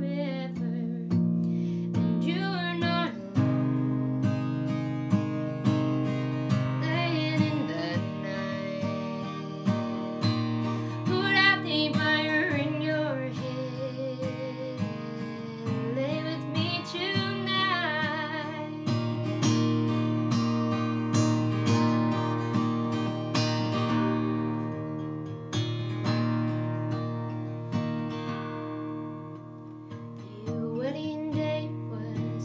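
A woman singing with vibrato over her own strummed acoustic guitar, capoed up the neck. The voice drops out a little past halfway, leaving the guitar alone, which grows quieter near the end.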